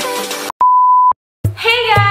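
Intro music, then a single steady, loud, high beep lasting about half a second, an edited-in bleep tone that cuts off sharply; after a brief silence a woman's voice starts over background music near the end.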